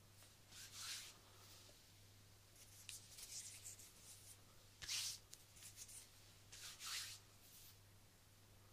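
Hands rubbing and brushing close to a binaural microphone: short, soft swishes, a quick run of them around three seconds in and the loudest about five seconds in.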